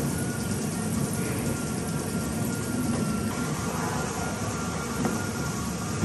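StairMaster stepmill running under a climber: a steady mechanical rumble from its motor and revolving steps, with a faint steady whine.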